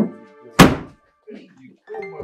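A car boot lid slammed shut with a single loud thunk about half a second in, over background music.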